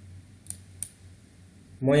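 Two sharp clicks of a computer mouse button, about a third of a second apart, over a faint steady hum.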